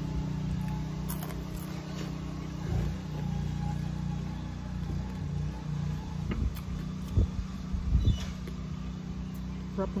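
A steady low motor hum runs throughout, with a few short knocks, the loudest about seven and eight seconds in.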